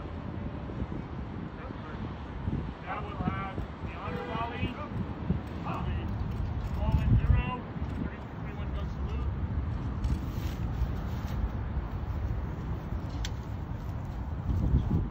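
A distant voice speaking for a few seconds in the middle, over a steady rumble of wind on the microphone.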